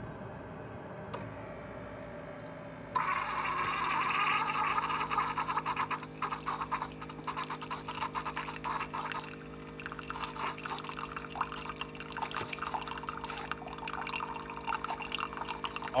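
Mr. Coffee single-serve K-cup brewer humming, then about three seconds in brewed coffee starts streaming into the mug, a steady splashing trickle over the machine's hum.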